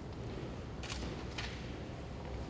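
Quiet hall ambience with a steady low hum, and two short sharp clicks about half a second apart near the middle.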